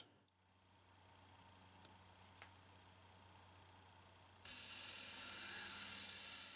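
Pololu Zumo tracked robot's small geared DC motors starting suddenly about four and a half seconds in, with a mostly high-pitched whir as the robot spins in place under a step command from zero to 100 PWM counts. The motors are struggling to hold a constant angular velocity.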